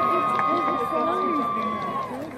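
Graduation crowd cheering. One long, high, steady cry is held for about three seconds and stops near the end, over nearby chatter.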